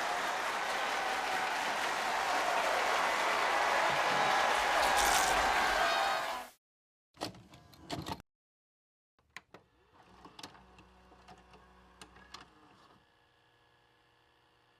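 Crowd applauding and cheering, cutting off suddenly about six and a half seconds in. After a short silence comes a brief burst of sound, then a run of faint mechanical clicks and clunks, a VHS-player sound effect.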